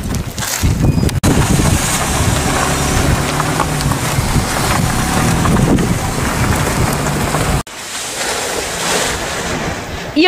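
Wind buffeting the microphone: a loud rushing noise, heaviest in the low end, that cuts off sharply about seven and a half seconds in and carries on more quietly after.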